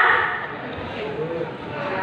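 Speech: the end of a question spoken into a microphone trails off at the start, followed by quieter, indistinct talk.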